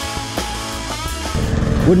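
Background guitar music with plucked notes. About a second and a half in, a fast-pulsing low rumble of helicopter rotors comes in underneath it.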